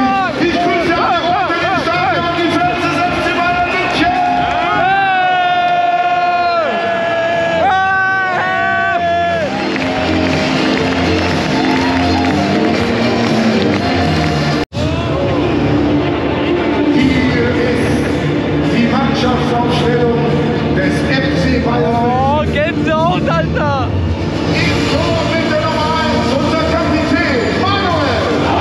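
A packed football stadium crowd singing along with music over the stadium loudspeakers, many voices holding long notes together. The sound cuts out for a split second about halfway through.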